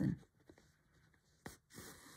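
Embroidery needle and six-strand cotton floss drawn through fabric backed by thick wadding: a faint pop as the needle goes through about one and a half seconds in, then a soft rasp of the thread pulling through. The popping and drag are the sign of a needle still a little small for the floss, softened here by the wadding.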